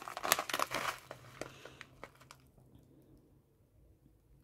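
A foil-backed plastic pouch of wax beads, with loose plastic wrap around it, crinkling as it is handled and turned over. There is a run of quick crinkles in the first two seconds, which then die away.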